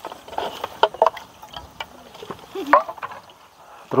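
Handling noise as fresh watercress is pressed by hand into a metal cooking pot: leaves and stems rustling, with scattered light clicks and knocks.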